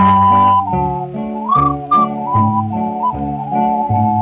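Instrumental break on a 1934 dance-band recording, a Decca 78 rpm record: a high lead melody with one note slid up about a second and a half in, over guitar and string bass accompaniment.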